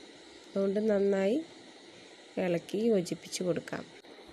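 A woman's voice speaking two short phrases, with a quiet pause between them.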